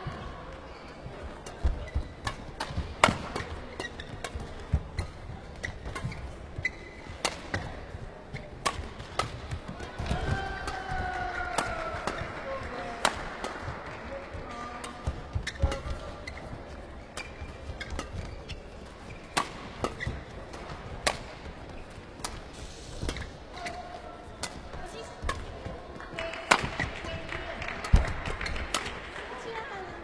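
A long badminton rally: rackets striking the shuttlecock again and again at an uneven pace, with a loud hit near the end as the point finishes, over the murmur of a crowd in a large hall.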